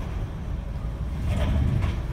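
Steady low rumble inside the cab of a 2017 Ram 2500 Power Wagon rolling at low speed, its 6.4-litre Hemi V8 running lightly.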